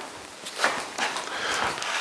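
A few footsteps and light knocks on a hard floor, with rustling movement getting louder towards the end.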